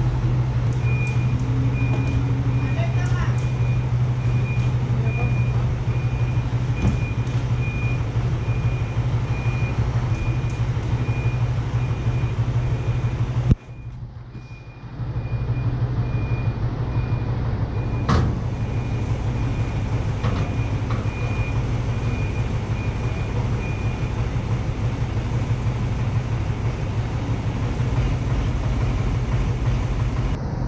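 Heavy machine engine idling steadily, with a high electronic warning beep repeating at an even pace until about two-thirds of the way through. The sound drops away briefly near the middle, and a single sharp knock comes soon after.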